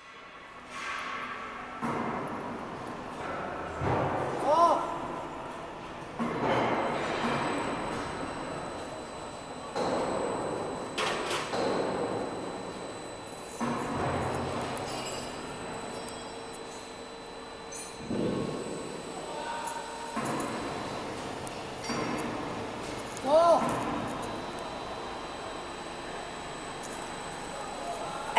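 Heavy-gauge U-channel roll forming machine running, with 6 mm steel strip feeding through its rollers. Uneven surges of metallic noise come every few seconds over a faint steady high whine, and there are a couple of brief distant voices.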